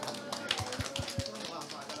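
Light, scattered handclapping from a few people, irregular sharp claps several times a second, with a few dull low thumps about halfway through.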